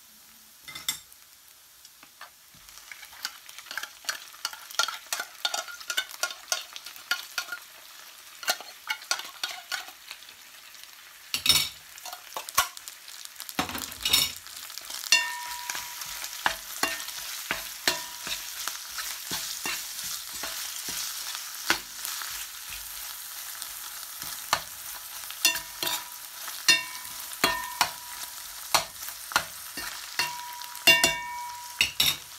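Canned tuna and chopped red onion frying in a stainless steel pan, sizzling, while a utensil stirs and scrapes against the metal with frequent clicks and knocks. The sizzle grows louder about halfway through, and the steel pan now and then gives a short ring under the utensil.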